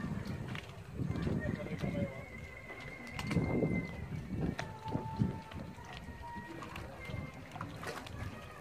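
Indistinct voices of several people talking, with scattered knocks and footsteps on wooden jetty boards. A few long, steady, high whistling tones sound, one after another.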